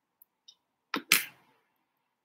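Two sharp knocks about a second apart from a fraction of a second, the second louder with a short ring, from makeup products being picked up and set down on a table, with a few faint light clicks before them.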